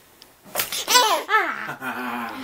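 An eight-month-old baby boy laughing in loud, high-pitched bursts, starting about half a second in.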